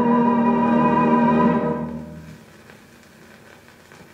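A 78 rpm record of orchestral opera music on a turntable: a held closing chord that fades out about two seconds in. The faint hiss and crackle of the record's surface is left.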